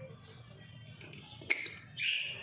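Small glass spice jar handled over a glass mixing bowl: a faint rustle, then one sharp click about one and a half seconds in, followed by a brief scrape.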